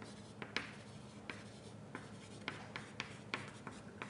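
Writing on a board: a faint series of short, irregular strokes and taps as the words are written out.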